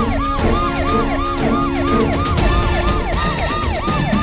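Police siren in a fast yelp, each cycle a quick rise and fall, about three and a half cycles a second, over background music.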